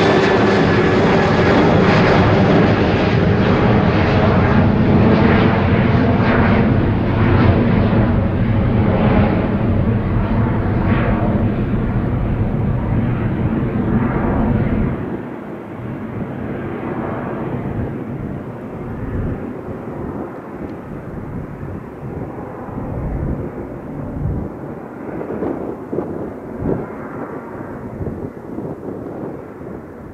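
Jet engines of a Ryanair Boeing 737 climbing away after takeoff: a steady jet noise that slowly fades and grows duller as the aircraft recedes. The low rumble drops away sharply about halfway through.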